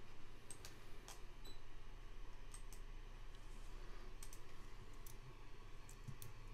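Faint, scattered clicks of a computer keyboard and mouse being operated, a dozen or so at uneven intervals, over a low steady hum.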